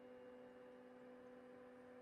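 Faint, steady whine of the Sovol SV08's stepper motors driving the toolhead at constant speed during the homing sequence.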